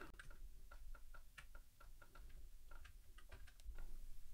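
Faint, irregular clicks of a computer mouse, a quick run of about a dozen or more over a few seconds.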